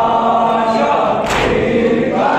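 A crowd of men chanting a noha (mourning lament) in unison, with one sharp collective slap of hands on chests (matam) about halfway through.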